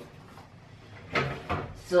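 Quiet kitchen room tone, then a couple of short knocks and rustles about a second in, from items being handled at an open refrigerator.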